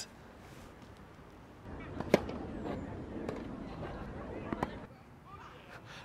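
Outdoor ambience with faint distant voices and a few sharp knocks or pops: one about two seconds in and two close together near the end.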